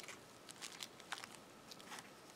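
Faint rustling and light clicks of hands handling and adjusting a small crocheted cotton piece, a few short crinkly ticks scattered through.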